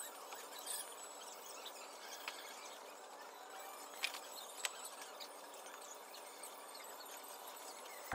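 Faint room tone with a few light clicks and taps as paperback books are pulled from a shelf and handled, two of them close together about four seconds in.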